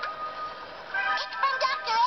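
Cartoon soundtrack from a television: quiet background music with a held note, then from about a second in a high, wavering, pitched sound like a squeaky cartoon voice or jingle.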